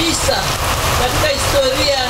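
Steady rain falling on umbrellas and wet ground, with a voice speaking in the background.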